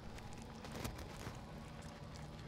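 Faint crunching and small clicks of two people biting into toasted rye Reuben sandwiches, over a low steady hum.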